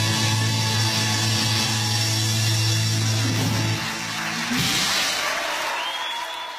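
Live rock band holding the closing chord of a song, guitars and bass ringing steadily, until it stops just before four seconds in. A final hit follows about half a second later, and a hiss of cymbals and the first applause rises near the end.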